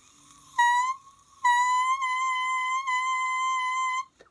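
Oboe double reed crowing on its own, blown without the instrument: a short crow, then a longer steady one held on a high C.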